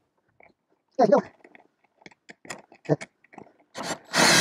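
A man's short wordless vocal sounds and scattered small clicks from handling a cordless drill and screws, before the drill runs.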